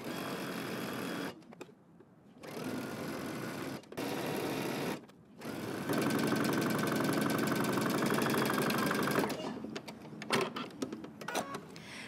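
Electronic home sewing machine stitching a seam in a knit dress, running in three short starts and stops, then a longer steady run of about four seconds with an even stitch rhythm before it stops. Faint clicks of fabric handling follow.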